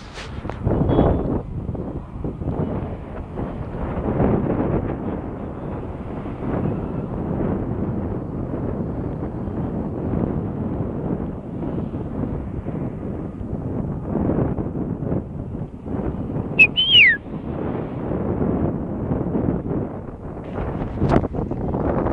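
Outdoor rumble with wind buffeting the phone's microphone. About two-thirds of the way through there is one short high whistle that rises and then falls.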